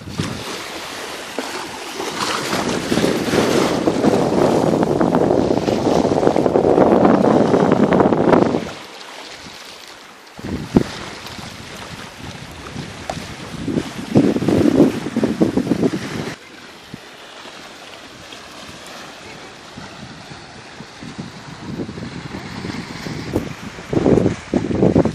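Wind buffeting the microphone over small waves washing onto a sandy shore. It is loudest for the first eight seconds or so, then drops off suddenly to a lower rush with a few short gusts.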